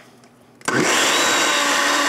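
Countertop blender switched on about two-thirds of a second in, spinning up quickly and then running steadily as it mixes liquid crepe batter of eggs, milk, flour, sugar and salt.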